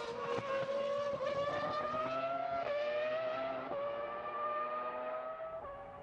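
Renault R25 Formula One car's 3.0-litre V10 at full throttle, its pitch climbing through the gears with three upshifts: about three seconds in, a second later, and near the end. The sound fades near the end as the car draws away.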